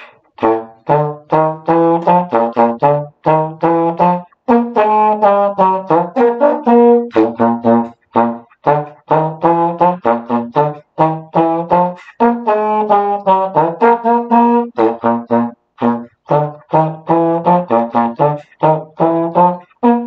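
Solo trombone playing a pep-band tune in short, separately tongued notes, with brief pauses for breath every few seconds.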